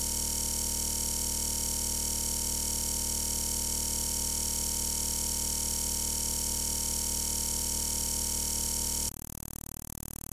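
A steady, unchanging electronic buzz made of several fixed tones, which starts abruptly and steps down to a quieter buzz about nine seconds in. It is typical of a digital glitch, a stuck audio buffer repeating while the picture freezes.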